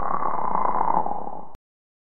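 Synthesized logo-sting sound effect: a dense, buzzy electronic noise that tapers slightly and cuts off suddenly about a second and a half in.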